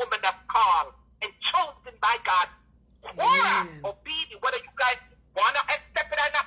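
A person talking continuously in short phrases, with one drawn-out exclamation that rises and falls in pitch about three seconds in.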